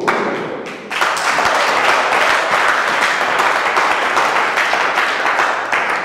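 Audience applauding, a dense run of hand claps beginning about a second in.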